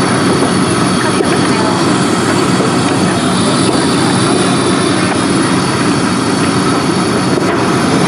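A large commercial building burning fully involved: a steady, loud noise from the fire with no separate events, over the steady hum of fire apparatus engines running.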